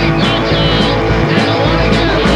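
Rock band playing loud: distorted electric guitars over bass and drums, with regular drum and cymbal strokes about every half second.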